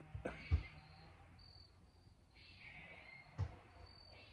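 Quiet outdoor background with faint high-pitched insect calls coming and going in short bursts, and two dull thumps, one about half a second in and one near the end.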